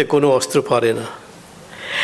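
A man's voice speaking at a lectern microphone for about a second, then a short pause ending in an audible intake of breath.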